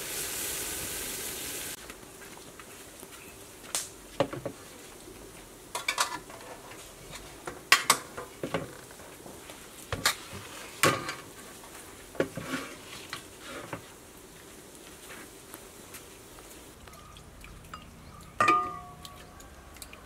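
Steam hissing off a pot of boiling water for the first couple of seconds, then scattered clinks and taps of a spoon against steel and glass bowls as sauce is spooned out, with a louder ringing clink near the end.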